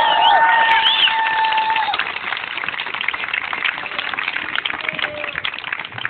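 Crowd cheering and whooping with several held shouts, which fade about two seconds in, leaving applause with dense clapping.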